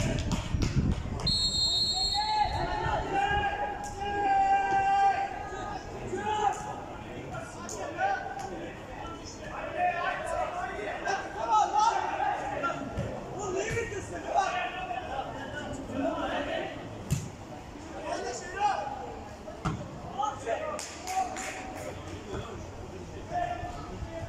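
A referee's whistle blows once for about a second, shortly after the start, for the kick-off after a goal. Voices shout across the pitch for the rest of the time, with occasional sharp thuds of the football being kicked.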